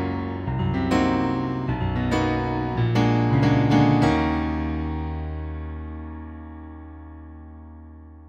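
Yamaha Motif XF's Rock Grand Piano voice played as a chordal piano phrase. Several chords are struck in the first four seconds, and the final chord at about four seconds is held and fades slowly away.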